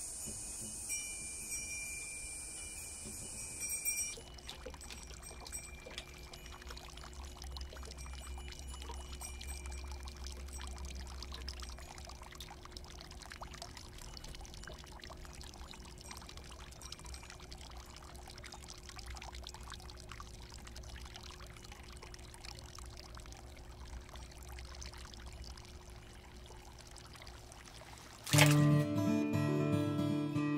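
Faint, steady trickle of spring water running into a house pool where dishes and vegetables soak. It opens with a steady high-pitched buzz that stops after about four seconds, and acoustic guitar music comes in near the end.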